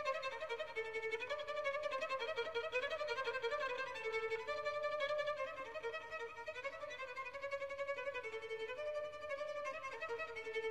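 Solo violin playing a fast, soft staccato passage: short repeated note patterns circling a few neighbouring pitches in an even, unbroken stream.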